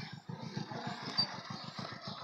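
Faint engine running, a rapid even low pulsing with no speech over it.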